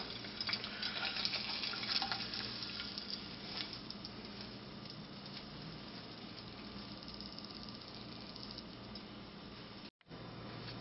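Faint sizzling of hot oil and food in a frying pan, with light crackles in the first few seconds that thin out to a low steady hiss.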